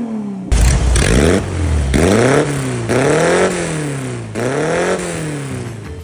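Car engine revved in repeated blips, rising and falling about once a second, with a deep exhaust rumble.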